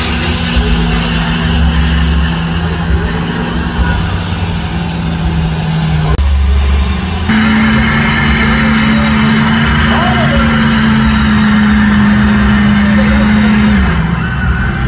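Lifted pickup truck's engine held at high, steady revs, its pitch dropping as it backs off near the end. Crowd voices and cheering run underneath.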